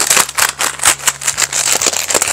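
A sealed single-serve bag of Doritos squeezed and worked in the hands: the foil bag crinkles and the tortilla chips inside crunch as they are crushed, in a rapid, irregular run of crackles.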